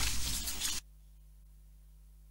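Uneven rustling, rubbing noise that cuts off abruptly under a second in, leaving only a faint, steady low electrical hum.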